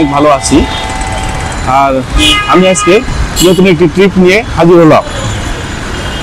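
A man talking over the steady noise of busy city street traffic.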